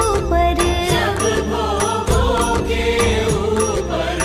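Hindu devotional music: a voice chanting a mantra-like melody over a steady beat with percussion.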